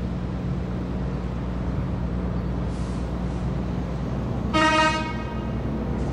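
A vehicle horn sounds one short toot, about half a second long, near the end, over a steady low hum of street traffic.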